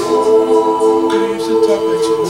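A mixed-voice a cappella group singing with no instruments, its voices holding a steady sustained chord.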